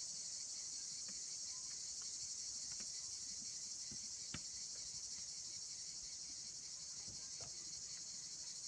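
A steady high-pitched chorus of chirping insects, such as crickets, with a few faint taps of chalk on the blackboard as lines are drawn.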